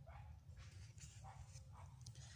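Near silence with a low rumble, and a few faint short calls repeating roughly every half second.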